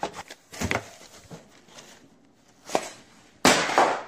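Knocks, clicks and rustling from handling and carrying a phone while walking, with a louder rustling burst near the end.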